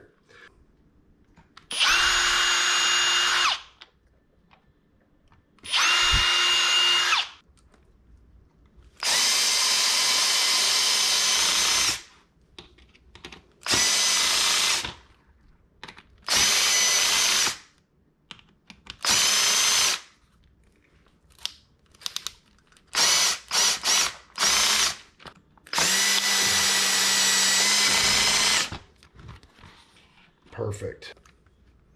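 Ridgid cordless drill-driver driving screws into a plastic crab trap to fasten its locking latches, run in repeated bursts of one to three seconds with pauses between, and a string of short quick trigger pulls a little past the middle.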